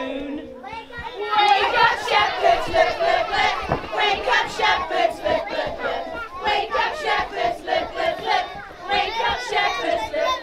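A group of young children's high voices shouting and calling out together, loud and continuous from about a second in.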